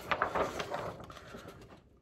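Faint rustling and crinkling of a printed paper sheet being handled and moved, dying away shortly before the end.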